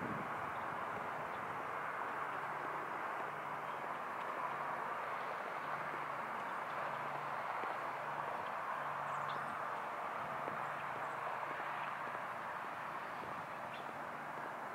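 Steady outdoor background noise, an even hiss, with faint soft sounds repeating about once a second, in time with someone walking.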